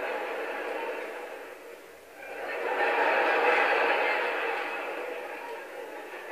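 Stand-up comedy audience laughing: a wave of crowd laughter that dips about two seconds in, swells again and then slowly fades.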